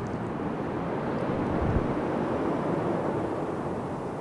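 An aircraft passing overhead: a steady rushing noise that swells slightly toward the middle and then eases off.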